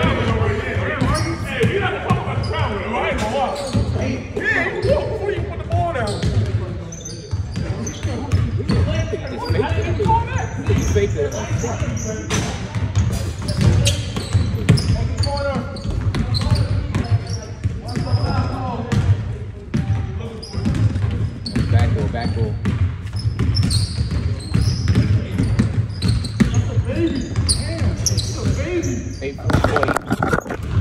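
Basketballs bouncing repeatedly on a hardwood gym floor, with players' voices and short sneaker squeaks, all echoing in a large gym hall.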